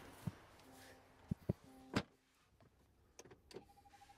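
A few soft clicks and knocks as the driver climbs into a Land Rover Defender 130, the strongest about two seconds in, with a short low tone from the car sounding twice.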